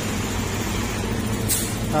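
Honda Beat FI scooter's small single-cylinder engine idling steadily with its throttle position sensor unplugged; the mechanic takes the smooth running this way as the sign of a faulty TPS. A brief hiss comes about one and a half seconds in.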